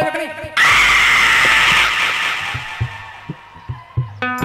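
A sudden loud, rough shout breaks in about half a second in, with the sung music cut off. It holds for about a second and a half and then fades, over soft dholak-like drum beats.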